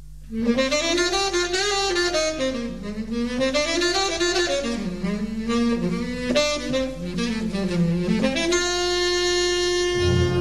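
Jazz recording: a solo wind instrument plays a winding melody line that comes in just after the start, then settles on a long held note near the end.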